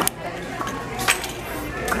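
A metal enamel pin on its cardboard backing card dropped and clinking as it lands on the hard floor, with the clearest clink about a second in.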